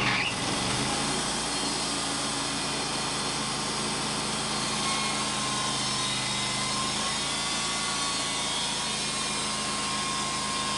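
Wood-Mizer LT35 bandsaw sawmill's gasoline engine running steadily, with a thin steady whine over it.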